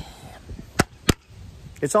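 Two sharp knocks about a third of a second apart, struck on a foam-core composite laminate panel sample. The panel is rapped to show that it is still all together and has not delaminated.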